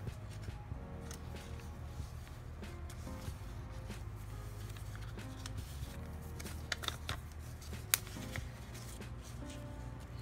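Soft background music with paper being handled: journal pages turned and a paper envelope flipped open, with a few sharp paper rustles and taps about seven to eight seconds in.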